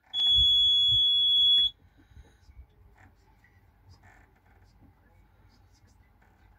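Boat engine instrument panel's warning buzzer sounding one steady high-pitched beep for about a second and a half as the ignition is switched on for a start, then cutting off sharply.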